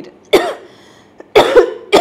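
A woman coughing into her hand: one cough about a third of a second in, then a quick run of two or three coughs near the end.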